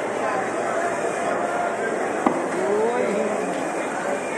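Crowd of shoppers and stallholders chattering at once in a busy covered market hall, with a single sharp knock a little past halfway.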